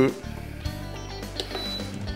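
An induction hob's touch controls giving a short high beep about one and a half seconds in as the hob is switched on, over steady background music.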